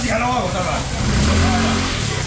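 A small motor vehicle engine running close by, swelling in level about a second in and easing off near the end, over a low steady rumble and the voices of a busy market.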